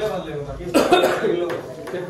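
A person coughs once, a short, sudden burst about three quarters of a second in, among voices.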